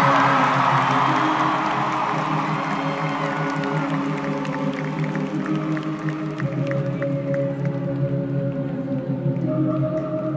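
Live arena concert music heard through a phone's microphone: sustained synth chords held steady, with crowd cheering that fades out over the first couple of seconds.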